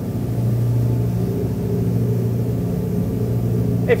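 Twin Volvo Penta D6 380 six-cylinder diesel sterndrives running under load at planing speed while the boat turns, a steady low drone heard from the helm.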